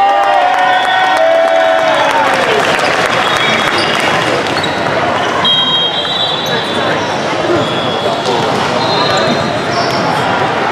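Busy din of a convention hall full of volleyball courts: balls being hit and bouncing on the floors over many overlapping voices. Drawn-out shouts trail off in the first couple of seconds, and short high whistle-like tones sound about midway and near the end.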